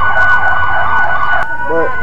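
Emergency vehicle siren in fast yelp mode, about four sweeps a second over a steady high tone, cutting off abruptly about one and a half seconds in and leaving a lower steady tone.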